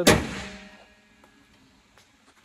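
The front hood of a Toyota MR2 Spyder closed with one sharp bang at the start, ringing briefly and dying away within about a second.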